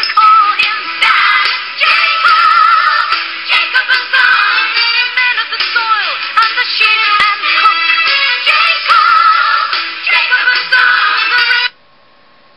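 A song with a singing voice and instrumental accompaniment, played back from a screen and picked up off its speaker, with heavy vibrato on the held notes. It cuts off abruptly near the end.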